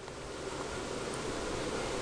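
A steady, even hiss with no distinct events in it.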